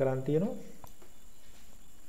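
A man's voice finishing a word, then low steady background hiss with one faint click a little under a second in.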